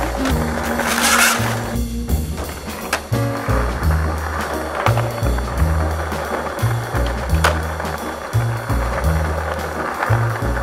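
Skateboard wheels rolling on stone paving, with a few sharp clacks, under jazz music with a repeating low piano-and-bass figure.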